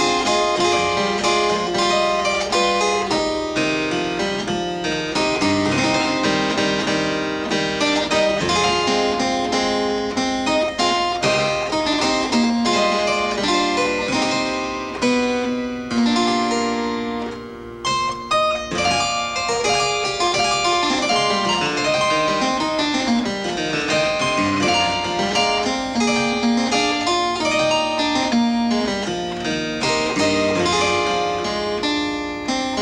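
Harpsichord playing a continuous piece of many quick plucked notes, with a brief lull a little past the middle.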